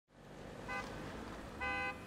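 Car horn giving two short toots, a faint brief one and then a louder, slightly longer one, over low traffic noise.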